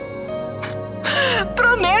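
Soft sustained background music. About a second in, a woman breaks into a sob, then her voice comes in tearfully.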